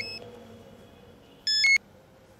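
Mobile phone ringing with a short electronic tune of stepped beeps. One phrase ends just after the start and a louder phrase comes about one and a half seconds in.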